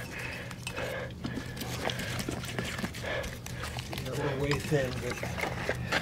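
A hand pressing and working wet refractory mud into the base of a tire-rim mold: faint handling sounds of the mud under a steady low hum, with a brief murmured voice about four seconds in.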